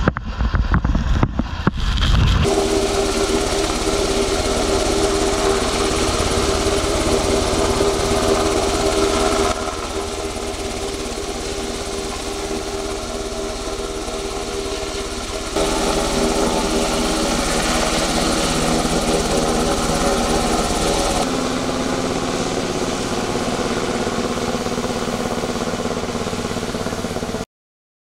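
Military rescue helicopter flying overhead: the turbine engines and rotor run with a steady droning hum, changing abruptly a few times. The first couple of seconds are a rushing noise, and the sound cuts off suddenly near the end.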